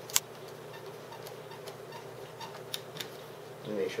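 A sharp click just after the start, then faint scattered ticks and clicks as a screw is tightened by hand into the remote control car's mount, over a steady low hum. A man starts speaking near the end.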